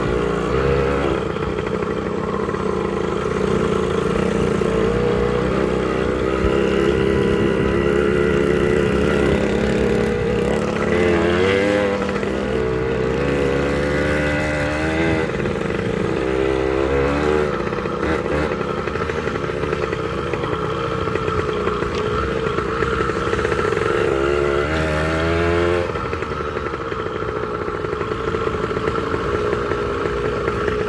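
Motorcycle engine running under way, heard from on the moving bike. The revs climb and drop several times in the middle and again near the end.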